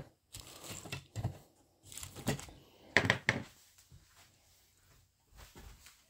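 Small plastic model-kit parts, tires among them, being handled and set down on a tabletop, with a plastic parts bag crinkling: a few brief clicks and rustles, the sharpest two about three seconds in.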